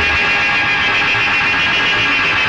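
A steady, high-pitched whine: a film sound effect for arrows in flight.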